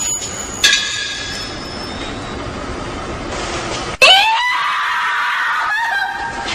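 A loud, high shriek starts suddenly about four seconds in, rising in pitch and then held for about two seconds, over a steady hiss.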